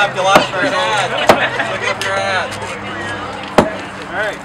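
Hammers striking a painted concrete-block wall: a few sharp, separate blows, the loudest near the end, with people's voices in between.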